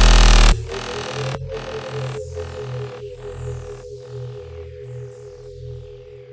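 Outro of a riddim dubstep track: the heavy, full-range bass section cuts off about half a second in, leaving a held synth tone over pulsing sub-bass that drops out in a steady rhythm a little faster than once a second while fading away.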